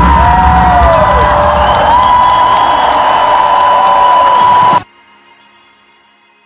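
Stadium concert: loud pop music with the crowd cheering, which cuts off suddenly about five seconds in, leaving only faint soft tones.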